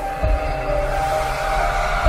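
Channel logo-intro music: held synthesizer-like notes stepping in pitch over a low rumble, with a swell of noise building toward the end.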